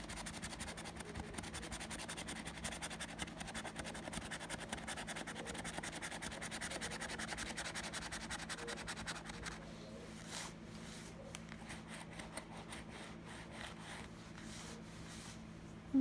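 A coin scratching the coating off a paper scratch-off lottery ticket in rapid, even back-and-forth strokes for about the first nine seconds, then in sparser, separate strokes.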